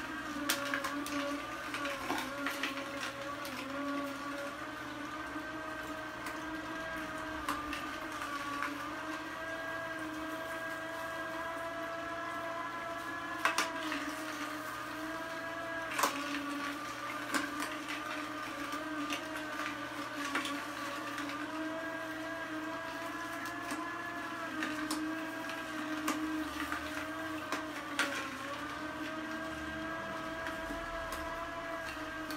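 Electric vertical juicer running on carrots: a steady motor hum whose pitch dips slightly now and then as it takes the load, with a few sharp cracks as carrot sticks are crushed in the chute.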